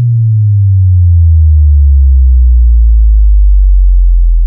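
Deep synthesized bass note, loud and held, gliding slowly downward in pitch with a fainter higher tone falling alongside it.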